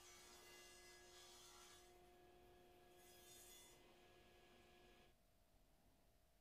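Near silence: room tone with a faint steady hum that cuts off about five seconds in.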